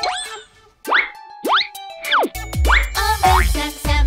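Cartoon sound effects: several quick whistle-like pitch glides, rising and falling, like boings. About two seconds in, bouncy children's-song backing music with a strong bass beat starts up.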